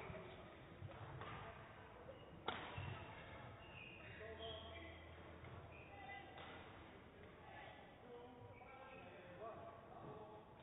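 Faint murmur of distant voices carrying in a large hall, with one sharp knock about two and a half seconds in.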